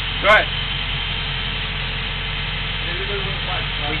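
Engine of the air compressor that powers a pneumatic pipe-bursting tool, running at a steady, even drone.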